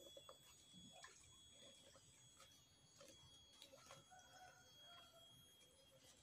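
Near silence: faint outdoor ambience with a few soft scattered ticks and a faint pitched call about four seconds in.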